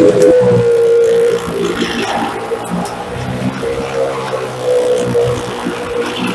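Car engine held at a steady drone as it circles the vertical wooden wall of a well of death, echoing inside the wooden drum, with carnival music mixed in.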